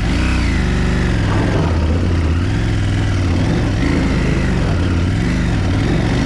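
KTM 790 Adventure S parallel-twin engine revving up and down as the bike pulls away from a standstill on a steep gravel climb after a stall, the revs rising and dipping several times under load.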